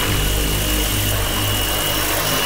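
Steady engine-like drone with a thin high whine above it, a sound effect laid under an animated logo intro.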